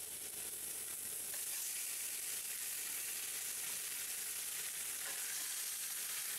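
Spice-rubbed tilapia fillets frying in smoking-hot lard in a cast iron skillet, giving a steady, even sizzle.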